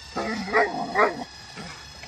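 A dog whining and yipping in a short run of pitched cries, with two louder peaks about half a second and a second in. A faint steady high hum sits underneath.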